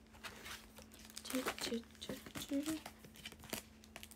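Close rustling and crinkling handling noise right at the microphone, in many short scrapes, with a few quiet murmured syllables in the middle, over a faint steady hum.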